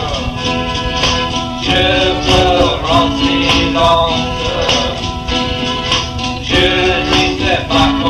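A 1960s garage rock recording: a singing voice over a full electric band with steady percussion.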